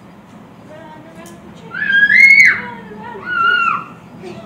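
A young child squealing twice in a high-pitched voice, about two seconds in and again near the end, the first call louder and longer.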